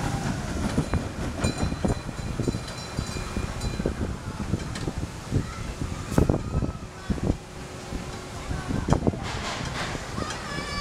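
A small children's roller coaster train rumbling and clattering along its steel track, with irregular knocks and clacks, the loudest about six and nine seconds in.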